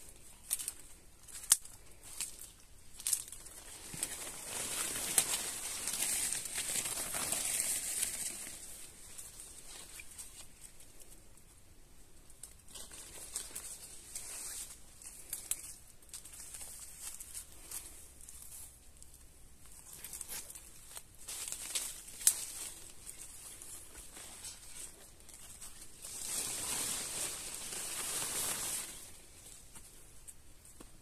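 Coffee-bush leaves rustling and brushing as the plants are pushed past at close range. Two longer stretches of rustling, with scattered sharp clicks between them.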